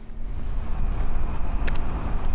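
Steady outdoor background noise with a deep low rumble, like distant traffic or a vehicle running nearby, and a couple of faint clicks near the end.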